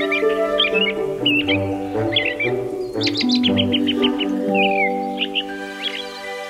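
A bird chirping and tweeting in short calls over gentle background music with long held notes, with a quick run of rapid chirps about three seconds in.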